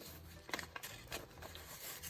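Paper banknotes handled and shuffled in the hands, giving several faint, crisp flicks and rustles at irregular moments.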